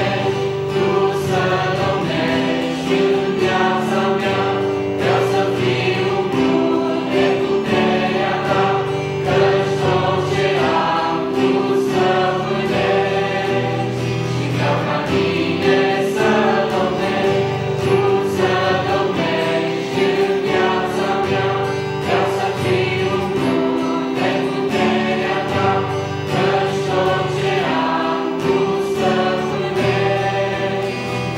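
A mixed youth choir of teenage boys and girls singing a Christian worship song together, with guitar accompaniment.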